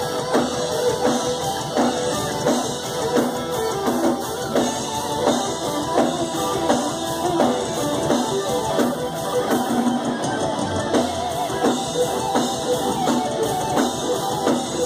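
Heavy metal band playing live, an instrumental passage of electric guitars over a drum kit keeping a steady driving beat.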